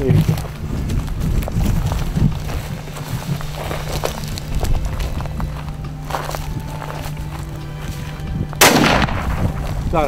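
A single rifle shot about three-quarters of the way through, sharp and the loudest sound, with a brief ringing tail, over a steady low hum.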